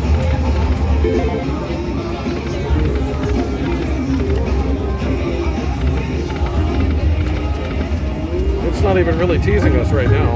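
Casino slot machine ambience: a Buffalo Link video slot's game music as its reels spin, over a steady low hum and background voices on the casino floor.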